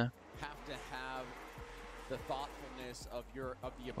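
Faint speech in short broken phrases, much quieter than the nearby talk, over a low steady hum.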